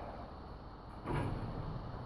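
Large driftwood mount being handled and turned in the hands, with a short scrape of wood about a second in.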